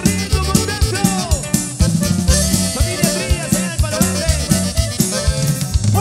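Norteña cumbia played by a band with drums, bass, accordion and saxophone: an instrumental passage over a steady cumbia beat, with gliding melody notes.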